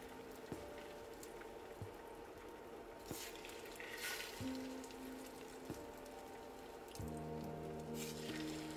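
Egg-battered pieces of jeon frying in shallow oil in a pan, a soft, faint sizzle with short crackling bursts about three and four seconds in as more pieces are laid into the oil, over quiet background music with sustained notes.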